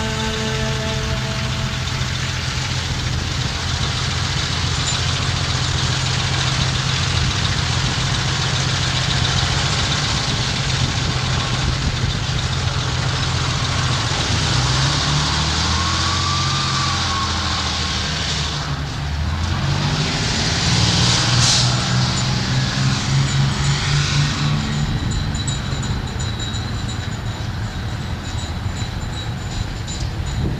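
Dense, noisy passage of a progressive rock band's home recording: a thick wash of sound over held low notes that shift pitch a few times, with a short rising-and-falling whistle-like tone about halfway through.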